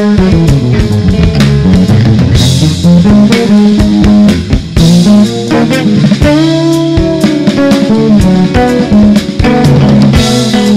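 Jazz trio of electric guitar, electric bass and drum kit playing live, with a busy line of low bass notes to the fore and the drums keeping time underneath.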